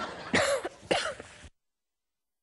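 A woman gives two short coughs, about half a second apart, after a brief hiss. Then the sound cuts to dead silence.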